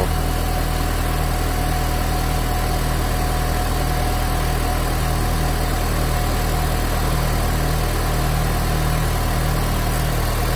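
2004 Honda Civic engine idling steadily, with a thin steady whine above the idle.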